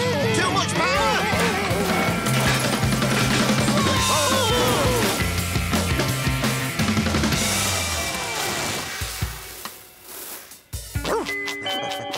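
Cartoon soundtrack: background music with a bass line, overlaid with electronic sound effects, a held high tone and gliding whistling pitches. About eight seconds in, the tone slides down and everything fades to a much quieter stretch.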